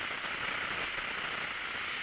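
Steady hiss of room tone and recording noise, with no distinct sound standing out.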